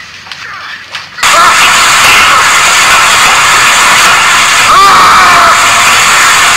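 Dubbed-in film soundtrack audio that cuts in abruptly about a second in, after faint clicks: a loud, dense roar of score and sound effects with a few gliding voice-like cries.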